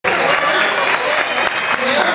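Audience clapping, mixed with crowd chatter.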